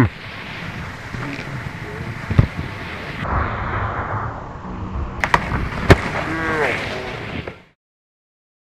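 Skis on snow with a steady hiss of snow and air, broken by sharp thuds, the loudest about six seconds in, as the skier hits the snow on landing. A voice calls out briefly near the start and again just after the loudest thud.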